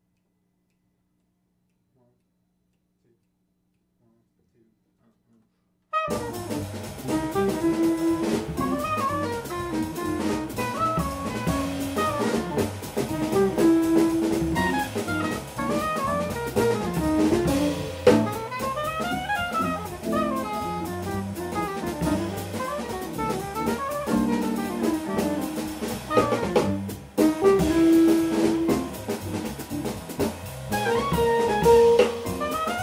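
Near silence with a few faint ticks, then about six seconds in a jazz combo starts a bebop tune: a soprano saxophone playing quick up-and-down lines over piano and a drum kit played with sticks on the cymbals.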